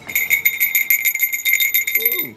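A hand bell rung rapidly and continuously close by, its single bright ringing pitch pulsing with each swing of the clapper, many strokes a second.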